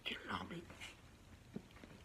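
A man speaking a word of Swedish at the start, then a short pause with a faint click.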